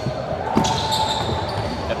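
Gym game noise: basketballs bouncing on the court with repeated low thuds, over background chatter in a large hall. A steady held tone starts about half a second in and stops just before the end.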